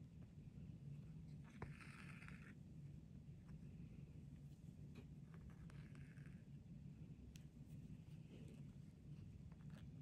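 Near silence: a faint room hum, with two soft rustles of sewing thread being drawn through felt, one about two seconds in and one about six seconds in.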